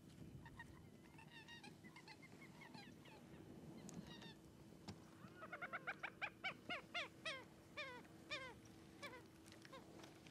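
Waterbirds calling: scattered short calls at first, then a fast run of louder calls, about four a second, in the second half.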